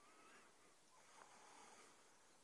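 Near silence of the open bush, with a few faint, thin bird calls.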